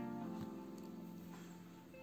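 Soft background music: a held chord of a few sustained notes that slowly fades, with a new note coming in near the end.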